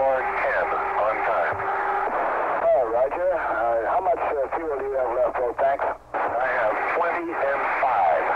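Voices over a spacecraft-to-ground radio link, with a short dropout about six seconds in.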